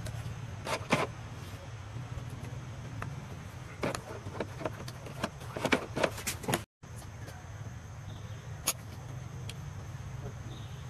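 Steady low outdoor rumble with scattered sharp clicks and rustles, a cluster about a second in and a denser run between four and seven seconds in, cut by a brief dropout near seven seconds.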